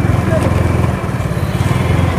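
Motorcycle engine running at low speed: a loud, low, rapidly pulsing rumble.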